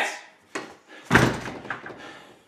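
A door slamming shut about a second in: one sudden heavy bang that dies away quickly, after a small click just before it.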